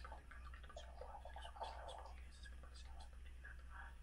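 A man whispering a prayer softly into a phone held against his mouth, over a faint steady low hum.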